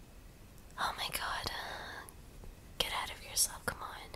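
A woman whispering, in two short unvoiced phrases, with a few light clicks near the end.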